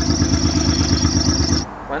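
Honda Pilot's 3.5-litre V6 idling steadily, a fast even pulsing with a thin high whine over it, cutting off suddenly near the end.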